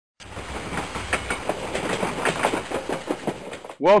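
A train running on rails, its wheels clattering over the rail joints in irregular clicks above a low rumble. The sound starts abruptly just after the beginning and cuts off just before the end.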